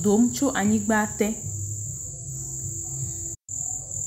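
A man's voice speaking briefly at the start, then a steady, very high-pitched whine over a low hum, cut by a short drop to total silence about three and a half seconds in.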